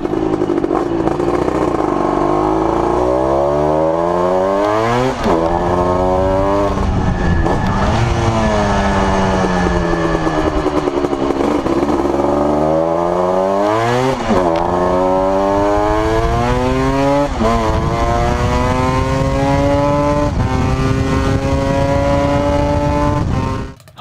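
A Bimota 500 V-Due's fuel-injected two-stroke engine being ridden hard, revving up through the gears. The pitch climbs and then drops sharply at each of about four upshifts, with a long stretch of falling revs as the bike slows in the middle.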